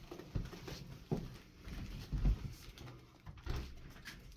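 Handling noise of a person carrying a small indoor blimp through a doorway: irregular bumps, knocks and shuffling, with the loudest low thump a little over two seconds in.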